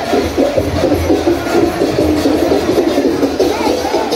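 A large crowd's many voices singing and chanting together with devotional music, steady and continuous.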